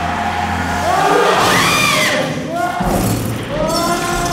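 Several voices crying out in overlapping rising-and-falling wails, over a low steady hum that stops about a second in.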